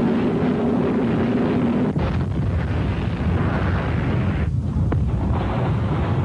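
Dramatised sound effect of a missile striking a ship: a loud, heavy roar, with a low drone through the first two seconds, then a broader rumble that dips briefly twice near the end.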